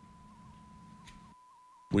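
A faint steady high electronic tone, a single pitch near 1 kHz with slight wavers, under otherwise very quiet audio, cut off as a man begins to speak.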